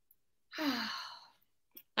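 A woman's sigh: one breathy exhale with a falling voice, lasting under a second.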